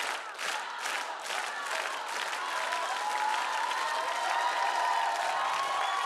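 A studio audience applauding and cheering. The clapping falls into a steady beat of about two and a half claps a second for the first two seconds, then turns into looser applause with voices calling out.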